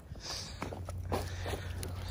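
Footsteps crunching on icy, slushy pavement: a few short crunches as ice breaks underfoot, over a steady low hum.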